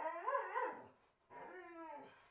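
A high-pitched, wavering vocal whine that rises and falls for about a second, followed by a shorter, lower voiced sound near the end.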